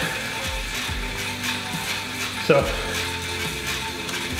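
Stationary exercise bike being pedaled, its drive mechanism running steadily, under background music.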